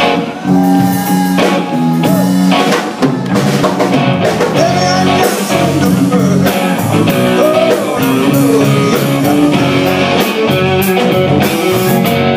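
Live band playing a blues song: electric guitars, keyboard and drum kit, loud and steady.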